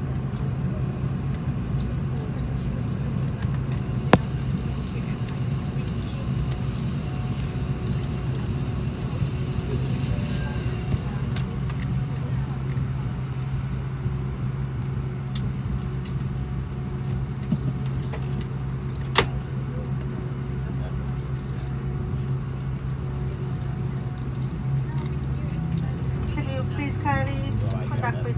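Steady low drone inside an Airbus A330 cabin while the airliner sits parked at the gate, with two sharp clicks, one about 4 seconds in and one about 19 seconds in. Voices begin near the end.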